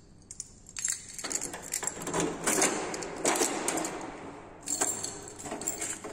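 Sheet-metal apartment mailbox being opened by hand: small metallic clicks and rattles of a key and the thin metal door, with a stretch of rustling in the middle and more clicks near the end.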